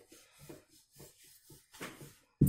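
Wooden rolling pin rolling paratha dough on a stone board: faint, soft rubbing strokes about twice a second, a slightly louder one near the end.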